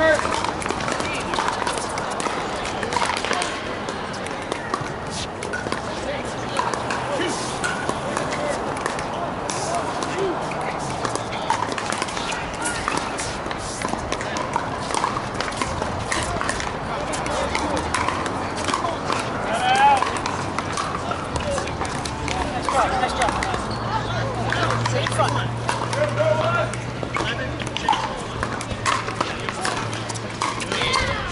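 Pickleball rally: sharp pops of paddles hitting the plastic ball, repeated at irregular intervals and mixed with more distant pops from neighbouring courts, over steady background chatter of players and spectators.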